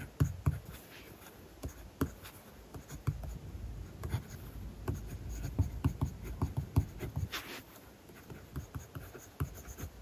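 Kaweco Special mechanical pencil writing Japanese characters on paper, close-miked: a quick run of short lead strokes and soft taps as the point lands, with one longer scratchy stroke about seven and a half seconds in.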